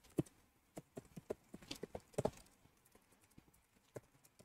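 Typing on a computer keyboard: an irregular run of about a dozen faint key clicks, with a louder cluster a little after two seconds in.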